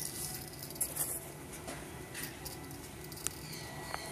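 Small plastic lattice cat ball rolling over a concrete floor: faint light clicks and taps, a few about a second in and one sharper click a little after three seconds.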